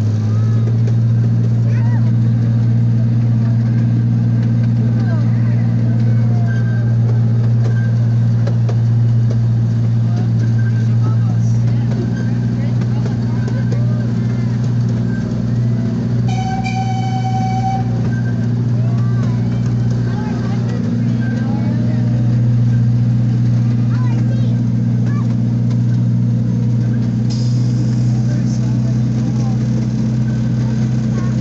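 Miniature park train running steadily, its engine drone steady under the ride. About halfway through it gives one short toot of its whistle, lasting over a second.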